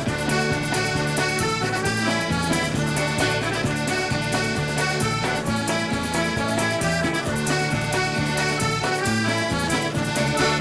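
A live traditional Newfoundland-style dance tune, led by accordion over strummed acoustic guitars, banjo and drums, with a steady, even beat.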